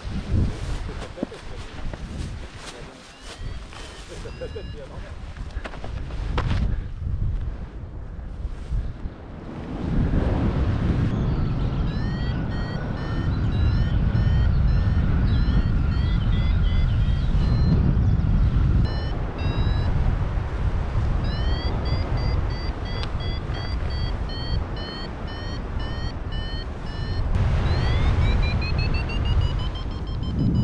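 Wind buffeting the microphone of a paraglider in flight. For the first few seconds short clicks and rustles sound during the launch. From about ten seconds in, a flight variometer beeps in short, evenly spaced tones, about two a second, which signal that the glider is climbing in rising air. Near the end the beeps glide upward in pitch.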